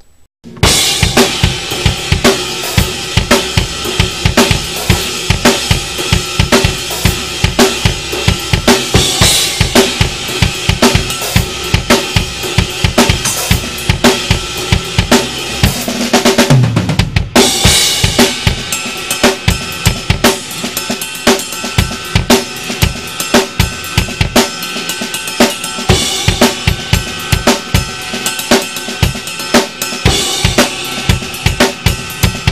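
Drum kit with Soultone cymbals (14-inch Custom Brilliant hi-hats, 17-, 18- and 19-inch Extreme crashes, 21-inch Custom Brilliant ride) played hard in a fast, steady rock groove of bass drum, snare and cymbals. It starts about half a second in. About sixteen seconds in, a fill runs down the toms, falling in pitch, and after a short break the beat picks up again.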